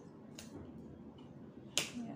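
Quiet handling of paper money envelopes, with a faint click about half a second in and one sharp snap near the end.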